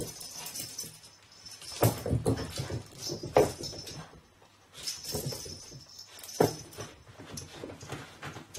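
Puppy playing with a tug toy on the floor: scattered knocks and scuffles, with a short puppy vocal sound about three and a half seconds in.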